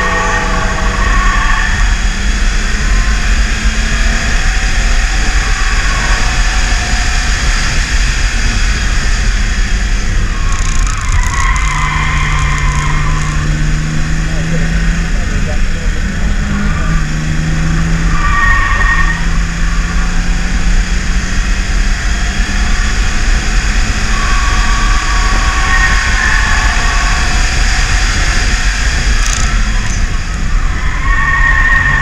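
BMW E36 328is's 2.8-litre straight-six engine pulling hard at track speed, heard from inside the cabin over steady road and wind noise, its pitch rising and falling with the throttle through the corners. Brief higher-pitched squeals come and go a few times.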